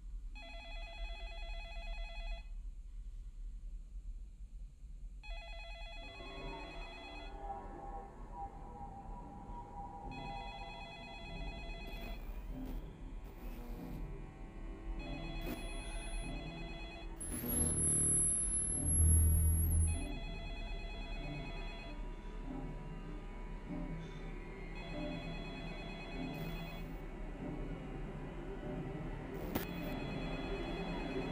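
Telephone ringing repeatedly, a ring of about two seconds roughly every five seconds, with music rising underneath. Near the middle comes the loudest moment: a low boom with a high thin whine.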